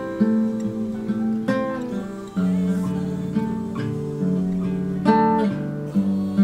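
Classical acoustic guitar fingerpicked in a repeating thumb, index, middle-and-ring-together, index, thumb pattern, the notes ringing into one another. The chord changes about two seconds in and again near the end.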